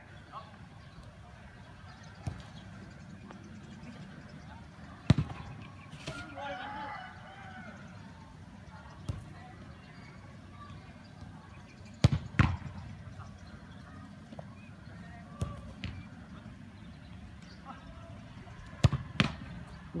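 A soccer ball being kicked in a shot-stopping drill: a few sharp single thuds spaced several seconds apart, one about five seconds in, a pair about twelve seconds in and another pair near the end.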